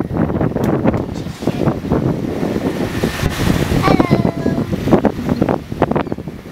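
Wind buffeting the microphone over the rush of sea water past a sailboat under way, steady throughout. A brief voice-like sound breaks in about four seconds in.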